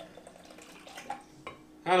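Kombucha starter tea trickling and dripping faintly from an upturned glass jar into a glass measuring cup, with a couple of small clicks of glass. A man's voice starts near the end.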